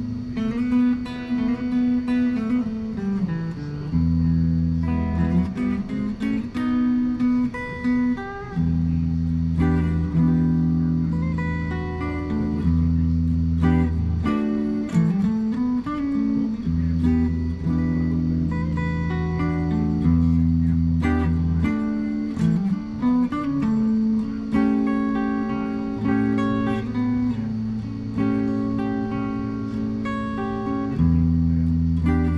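A 1981 Ibanez Artist electric guitar played clean: picked single notes and chords that ring on, with a few notes sliding up and down in pitch.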